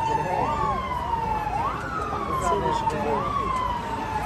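Emergency vehicle siren sounding through a street crowd, its pitch jumping up and sliding slowly down again, repeating about every second and a half. A crowd's voices murmur underneath.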